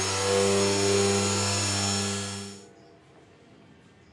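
Milwaukee cordless polisher running steadily with a One Step pad and polish on car paint: a steady motor hum with a hiss over it, which fades out about two and a half seconds in.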